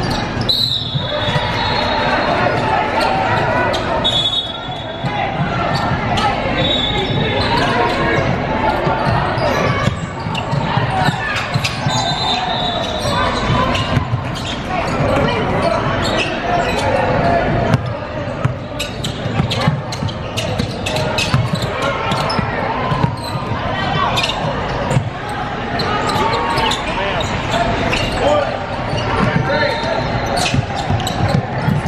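Live basketball game sound in a large echoing gym: a ball bouncing on the hardwood court, with brief high sneaker squeaks several times in the first half, over players' and spectators' voices.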